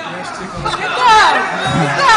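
Voices chattering and laughing over music, with a loud falling swoop about a second in and another near the end.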